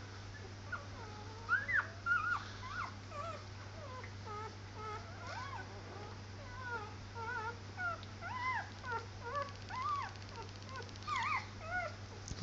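Five-day-old puppies squeaking and whimpering as they nurse: many short, high, rising-and-falling squeaks, starting about a second and a half in and coming in scattered clusters. A steady low hum runs underneath.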